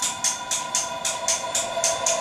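Horror film score: a held organ-like chord with sharp ticks pulsing over it about four times a second, which grows louder right at the start.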